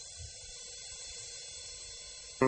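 Faint, steady hiss of the recording's background noise in the gap between two album tracks.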